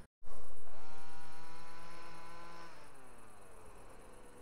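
Motorcycle engine revving: it starts abruptly, rises in pitch, holds one steady high note for about two seconds, then drops back, with the whole sound fading away steadily.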